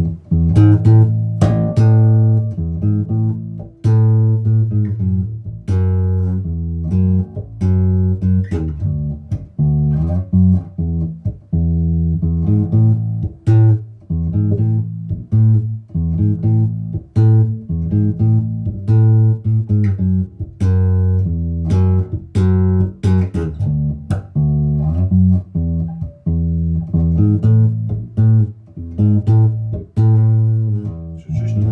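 Electric bass, a Richwood 70s-style Jazz Bass copy, played through a Laney RB4 bass amp with a 1x15 extension cabinet: a continuous line of plucked notes with sharp, bright percussive attacks and short breaks between phrases.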